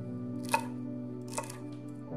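Chef's knife dicing celery on a wooden cutting board: two sharp knife strikes on the board, the first the louder, over steady background music.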